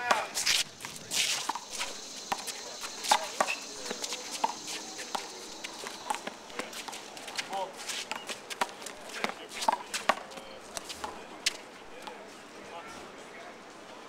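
One-wall handball rally with a big blue rubber ball. The ball is smacked by hand and slaps off the wall again and again, while sneakers scuff across the court. The hits stop about eleven and a half seconds in.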